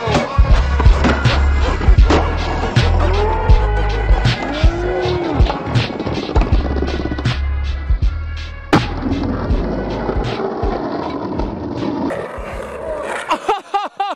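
Hip hop beat with a heavy bass line and no vocals. About twelve seconds in it stops, leaving quieter live outdoor sound with a few sharp knocks near the end.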